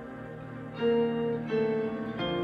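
Fender Stratocaster electric guitar picking two ringing notes, about a second in and again half a second later, over a soft sustained keyboard backing track.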